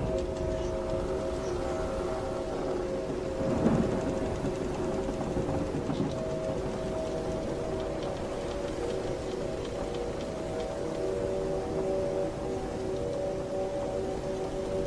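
Pirate-ship sea ambience: a steady rumbling wash of ocean noise under several held droning tones, with one brief louder surge about three and a half seconds in.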